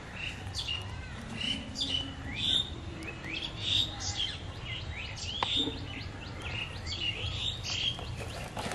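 Birds chirping, with many short, quick rising chirps overlapping through the whole stretch over a steady low background rumble. A single sharp click comes about five and a half seconds in.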